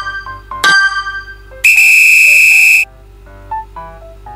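Background music with a light melody, a bright chime struck once about half a second in, then a loud steady electronic beep lasting just over a second, like a quiz timer's buzzer, before the soft music goes on.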